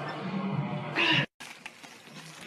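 Men laughing loudly, with a high squealing laugh about a second in; the sound then cuts off suddenly and a much quieter stretch follows.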